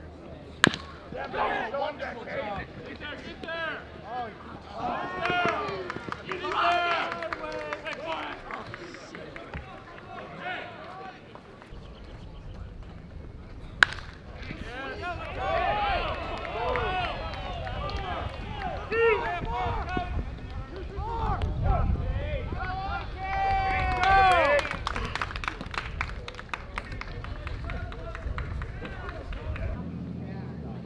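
Players and spectators at a baseball game shouting and calling out, with no clear words, through most of the stretch. A sharp crack of a baseball in play about a second in and another about fourteen seconds in, with a low rumble from about twelve seconds on.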